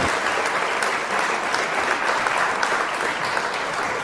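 Audience applauding after a song ends.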